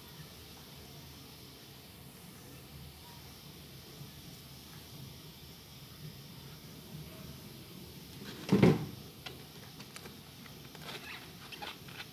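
A faint steady hiss with one loud, short thump about eight and a half seconds in, followed by a few light clicks and taps.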